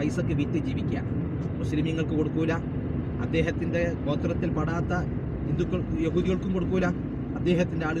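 Talking inside a moving car, over the steady low hum of the car's engine and road noise in the cabin.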